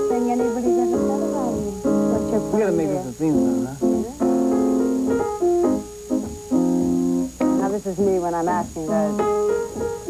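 Grand piano played in chords and melody: a tune being improvised on the spot as a theme song. A voice joins in over the playing at times.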